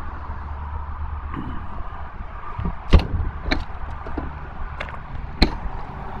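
Footsteps on gravel, short crunching steps about every half second from about three seconds in, the first the loudest, over a steady low rumble.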